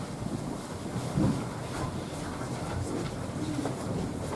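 Low rumbling room noise in a church sanctuary, with a few soft bumps and shuffles from people moving about, the loudest bump about a second in.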